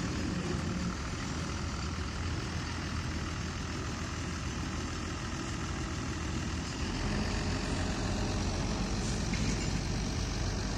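Farm tractor's diesel engine running steadily as it tows empty sugarcane cars along narrow-gauge track. Its low rumble grows louder about seven seconds in.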